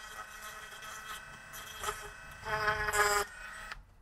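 1x30 belt sander running with a steady whine while the tip of a knife-sharpening angle guide is ground on its belt and platen; the grinding gets louder for about a second near the end, then the sound cuts off suddenly.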